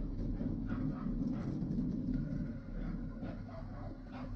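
A dog barking a few times in the first half, over a steady low rumble of wind and tyres from a mountain bike riding along a gravel lane.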